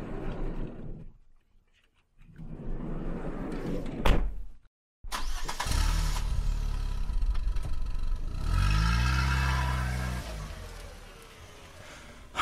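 Car sound effects: a car door shuts with a knock about four seconds in, then a car engine starts and runs, its pitch rising as it accelerates away around the middle before it fades out.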